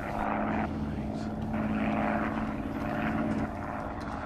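Propeller aeroplane engine droning steadily as the plane flies.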